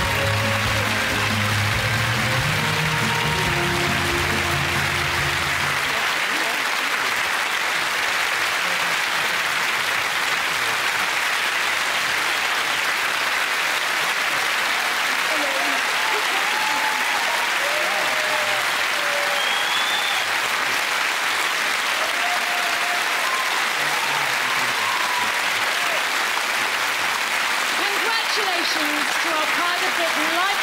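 Long, steady audience applause filling a large hall, with music playing under it for about the first six seconds. Faint voices come through the clapping later on.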